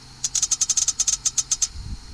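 Fast run of sharp snaps, about ten a second for over a second, as the ignition coil's spark, fired by an MSD 6AL ignition box, jumps the gap of a spark tester each time the trigger wire makes contact. The box is working and gives a strong spark. A brief low thump near the end.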